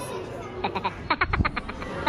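Editing transition sound effect: a quick rattling run of clicks lasting under a second, ending in a low thump.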